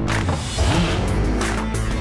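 Motorcycle engine revving, mixed with a music soundtrack with a steady beat.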